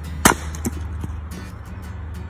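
An axe splitting a log of firewood on a chopping block: one sharp, loud crack just after the start, then a couple of lighter knocks.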